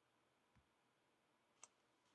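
Near silence, broken by a faint low thump about half a second in and a single sharp click near the end.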